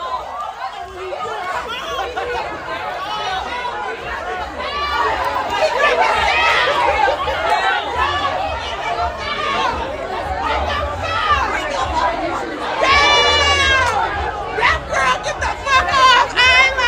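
Several people talking over one another, voices raised, with one loud shouted call near the end.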